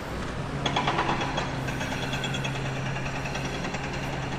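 An engine running steadily, with a low hum and a fine, rapid rhythmic clatter above it. It comes in about half a second in.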